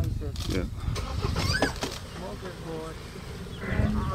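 Low, steady engine rumble of a game-drive vehicle running, with brief voices over it.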